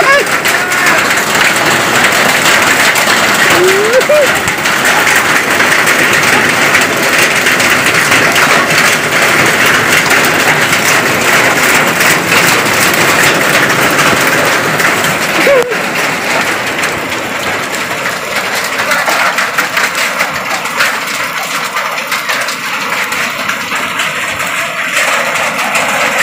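Heavy hail falling with rain, a dense hiss of countless small hailstone impacts on concrete ground. It eases a little after about two-thirds of the way through.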